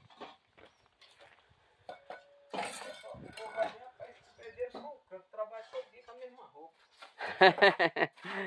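Voices talking at a distance, with a louder voice near the end. A few light clinks run underneath, from bricklaying tools against brick.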